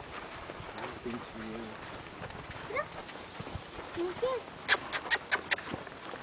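A quick run of five sharp, high clicks a little under a second long, about three-quarters of the way through, amid faint voices and a short spoken phrase in Spanish.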